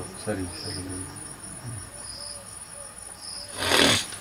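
Insects, likely crickets, chirp in the background, with short high chirps about every second over a steady high trill. Near the end a brief, loud rustling noise rises over them.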